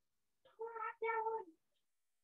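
Two short, faint, high-pitched vocal calls in quick succession, each holding a fairly steady pitch.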